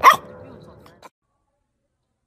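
A single short, loud bark, most likely from a dog, at the very start, followed by fainter sound that cuts off abruptly about a second in.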